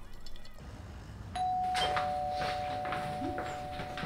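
Two-tone doorbell chime: a higher note sounds about a second in, and a lower note joins half a second later, both ringing on steadily. Footsteps on a hard hallway floor come under the chime.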